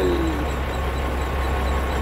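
Peterbilt semi truck's diesel engine idling, a steady low rumble.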